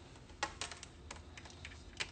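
Faint, irregular light clicks and taps, about eight in quick uneven succession, the first one the loudest.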